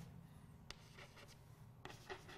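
Faint chalk writing on a blackboard: quiet scratching with two light taps of the chalk, one early and one near the end.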